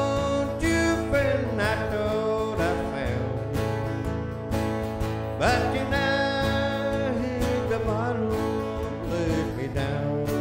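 Two acoustic guitars strumming a country song, with a lead melody line over them that bends up into its notes and holds them.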